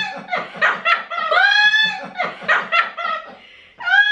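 People laughing: a high-pitched laugh in quick bursts with a few drawn-out notes, and a man laughing along.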